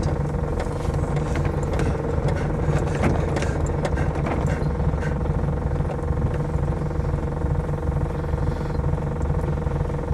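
Car engine idling steadily, heard from inside the cabin, with a few faint clicks.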